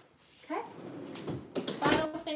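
A woman's brief spoken word, then a short, loud knock just before the end, something set down or knocked in the kitchen.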